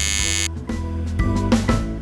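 Electric door buzzer sounding harshly and cutting off about half a second in, over background music with a steady low bass.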